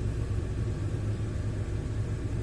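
Steady low rumble of idling vehicle engines in slow traffic, heard from inside a car's cabin.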